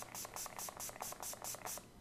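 Pump spray bottle of makeup-remover spray pumped rapidly onto a cotton pad: a fast run of short, faint hissing sprays, about five a second.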